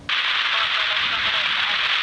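Air-traffic-control VHF radio hiss from an open, keyed transmission: steady static that starts suddenly, with a faint voice barely audible beneath it.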